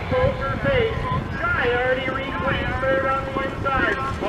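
A race announcer calling the harness race in a fast, unbroken stream over public-address loudspeakers as the field comes around the final turn.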